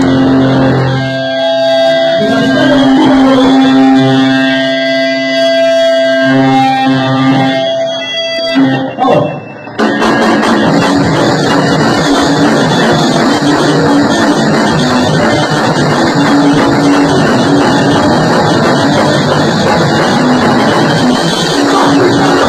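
Live rock band playing: electric guitar holding ringing notes for about nine seconds, a brief drop, then about ten seconds in the band comes in with a loud, dense wall of guitar and drums.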